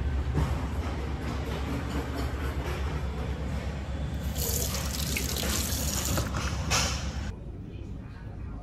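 Water running from a stainless-steel hand-wash sink tap over a hand for about two seconds, starting a little past the middle, with a short second splash just after. A steady low hum runs underneath and drops away near the end.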